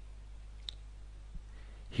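A single faint computer-mouse click about two-thirds of a second in, over a low steady hum.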